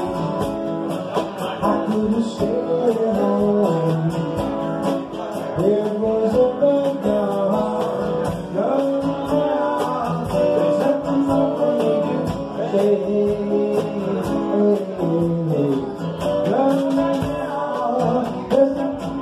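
A live acoustic band playing a country-style song, with strummed acoustic guitars and a melodic lead line over a steady beat of drum and cymbal strikes.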